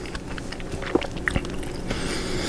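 A person chewing a mouthful of Chicago-style hot dog close to the microphone, with scattered small mouth clicks.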